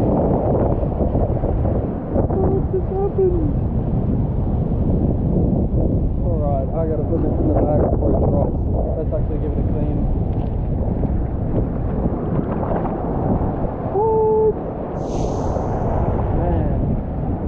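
Surf surging over rocks and rushing water, heard as a loud, steady low rumble mixed with wind buffeting on the microphone. A few short muffled pitched sounds come through it, one near the end.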